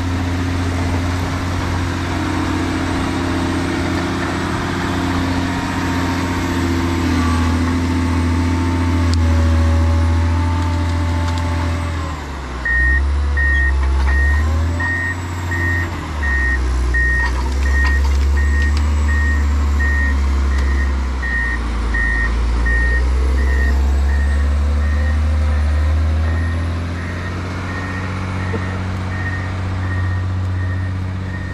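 John Deere 670GP motor grader's diesel engine running steadily as it works a dirt road. About 12 seconds in the engine note drops, and the grader's backup alarm starts beeping at an even pace, about one and a half beeps a second, as it reverses.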